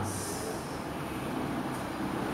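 Steady background room noise, a hiss with a low rumble and no clear tone or rhythm, with a brief high hiss at the start.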